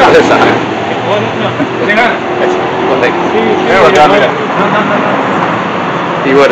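Indistinct background voices, a few short snatches of talk, over a steady hum of room and street noise.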